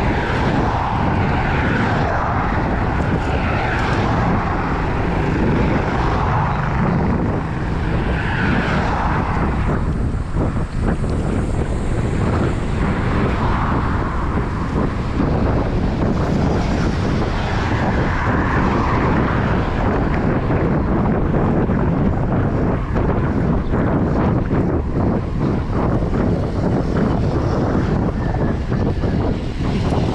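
Wind rushing over the camera microphone of a moving bicycle: a steady low rumble with a few swells that come and go.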